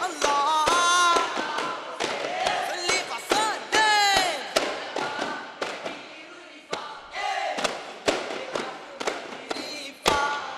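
A group of daf (duff) frame drums struck by hand in a rhythm of sharp slaps, under group singing and chanted calls of duff muttu. A loud call rises and falls near the middle, and the playing goes quieter for a couple of seconds past the halfway point.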